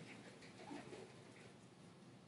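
Near silence, with a few faint sloshes of liquid in a large glass jug being shaken in the first second.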